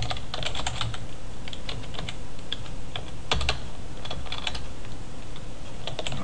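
Computer keyboard typing in short runs of quick keystrokes, with one louder knock about three seconds in.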